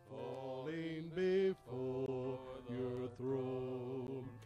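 Men's voices singing a slow worship song in long held notes with short breaks between phrases, with keyboard accompaniment, through a PA.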